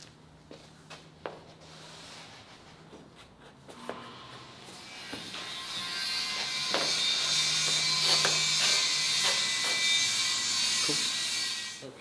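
Scattered knocks and rubbing from a large carbon fiber roof panel being handled, then background music swelling in from about a third of the way through and staying loud until it drops away at the end.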